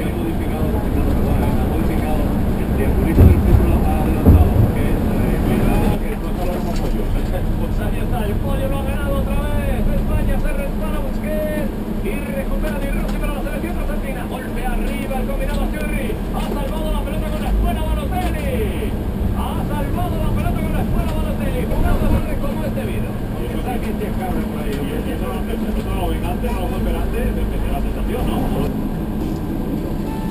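Public bus running along the road, heard from the front seat: a steady engine and road rumble, with two loud thumps about three and four seconds in.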